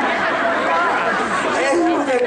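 A man's mock sobbing and wailing into a microphone over the PA, with audience chatter underneath.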